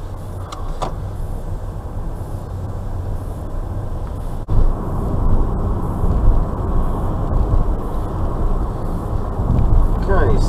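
Car interior noise of engine and tyres on the road, low and steady while the car moves slowly through a turn. About four and a half seconds in the noise jumps suddenly louder and carries on as steady road and engine noise at around 27 mph.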